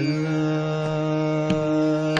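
Male Hindustani classical vocalist holding one long steady note in raga Bhimpalasi over a tanpura drone, with a single light tabla stroke about three-quarters of the way through.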